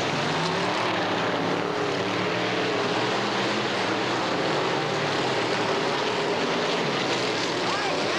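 Dirt modified race cars' V8 engines running hard around a dirt track, a loud continuous drone whose pitch rises and falls as the cars accelerate and pass.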